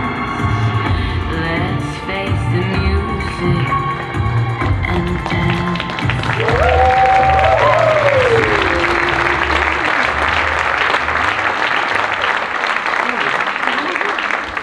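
Dance-band music with a singer plays and stops about six seconds in, and audience applause takes over for the rest, with one rising-and-falling cheer near its start.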